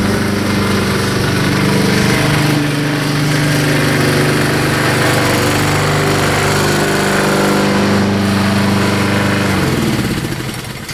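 Honda HRT216 lawn mower's single-cylinder four-stroke engine running steadily as the mower is driven across the grass, with slight shifts in pitch. Near the end the engine is shut off and winds down.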